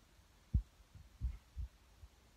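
A few dull, low thumps on the microphone, the sharpest about half a second in and two softer ones later, like a handheld recording device being handled or bumped.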